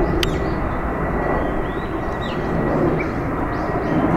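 Steady outdoor background rumble with faint bird chirps, broken by a single sharp click shortly after the start.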